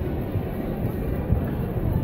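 Steady low rumble of busy city-street background noise, with no distinct single event standing out.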